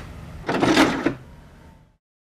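A brief mechanical clatter about half a second in, lasting about half a second, followed by a fading hiss that cuts to silence.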